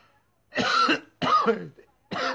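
A person coughing twice in quick succession, hard, voiced coughs after a strong hit of smoke.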